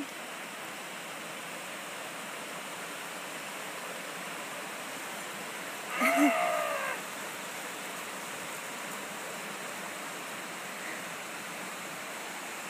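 Steady rush of a rocky mountain creek and its small cascade. About six seconds in, a person gives one short whoop that falls in pitch.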